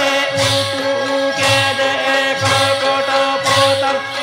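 A Dasai song chanted in long held notes, over a drum beating about once a second.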